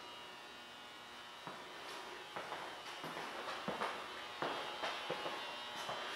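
Faint, soft footsteps on a ceramic tile floor, about six irregular steps starting a second or so in.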